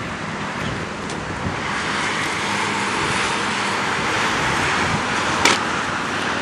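Road traffic noise from passing vehicles, an even rushing sound that swells after the first second and holds, with one sharp click near the end.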